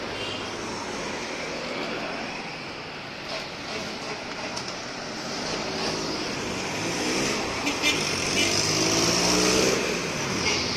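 Street traffic noise, with a motor vehicle's engine rising in pitch and growing louder through the second half as it approaches, loudest near the end.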